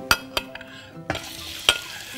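A metal spoon clinks against a plate as raw shrimp are spooned into hot oil in a stainless steel frying pan. About a second in, sizzling starts as the shrimp hit the oil, with sharp spoon clicks over it.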